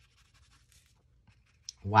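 Faint, soft scratching of a water brush stroking paint onto paper, with a single small click shortly before the end.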